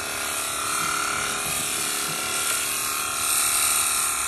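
Electric sheep-shearing handpiece running steadily, its reciprocating cutter buzzing as it clips the fleece off a young sheep, a little louder near the end.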